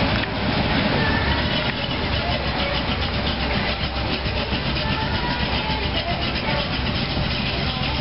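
Hot rod coupe's engine running at low speed as the car pulls slowly away, a steady rumble with a fast even pulse in the exhaust note.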